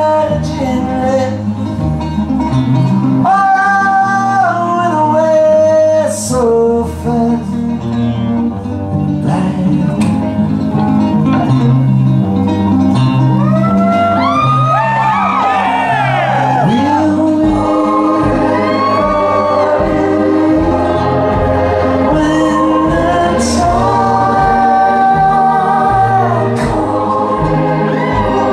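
Live rock song: a man sings long held notes over a strummed acoustic guitar and band. A steady low beat comes in about two-thirds of the way through.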